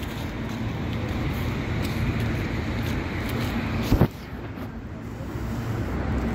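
Road traffic: a steady wash of car noise from a busy street. About four seconds in there is a single sharp knock, the loudest thing here, after which the traffic noise is quieter.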